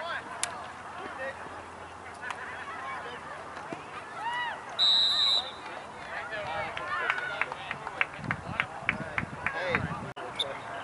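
A referee's whistle blows once, a short, shrill steady blast about five seconds in, over players and spectators shouting on a lacrosse field. A quick run of sharp clicks follows near the end.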